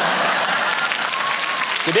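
Studio audience applauding: a steady patter of many hands clapping that gives way to a man's voice near the end.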